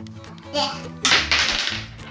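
A rushing whoosh of noise about a second long, starting about a second in, over steady background music.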